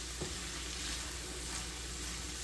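Chopped onions sizzling in oil and hamburger fat in a stainless steel skillet over high heat, stirred with a spatula that clicks lightly against the pan once early on. The sound is a steady, even sizzle as the onions sweat.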